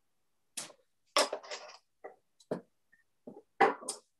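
A scattering of short handling sounds, knocks and rustles of things being picked up and set down on a work table, with silence between them; the loudest comes about a second in and another near the end.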